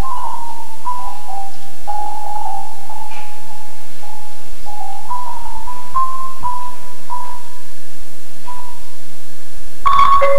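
Concert marimba played with mallets: a slow melody of long held notes, one at a time, in the upper-middle register. Right at the end it bursts into many notes at once over a wider range.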